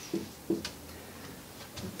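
Dry-erase marker writing a digit on a whiteboard: a few short strokes and a sharp tick in the first second, then quiet.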